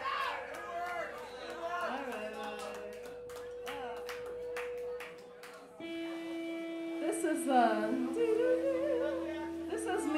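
Indistinct voices of a bar crowd over a steady held note from the stage. About six seconds in the sound changes abruptly and a lower held note takes over, with voices continuing over it.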